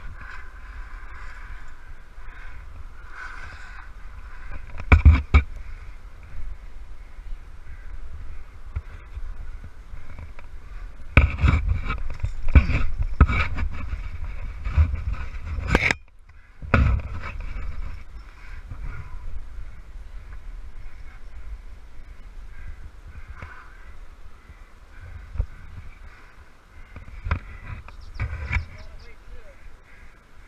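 A climber's pack and gear scraping and knocking against granite while squeezing up a narrowing crack: a short burst about five seconds in, then a longer run of knocks and scrapes from about eleven to seventeen seconds.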